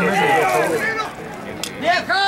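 Spectators' voices shouting, several overlapping, loudest in the first second and again near the end.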